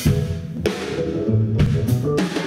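Live instrumental rock band playing, with a drum kit and low bass notes; sharp drum hits land right at the start and again several times in the second half.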